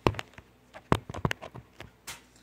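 A string of about eight irregular sharp taps and knocks from the phone being handled and propped up on the concrete, fingers knocking against it.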